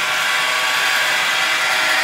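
Homemade 12-inch flat lap running, its 1/2 HP Leeson electric motor and V-belt pulley drive turning at a steady speed with an even whir and hum.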